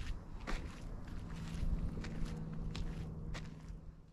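Footsteps on a dirt trail at a steady walking pace, about two steps a second.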